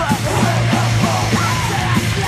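Crust punk band playing fast: heavily distorted guitars and drums on a steady quick beat, with shouted vocals.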